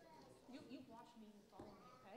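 Faint, high-pitched children's voices chattering at a distance, picked up off-microphone in a large room.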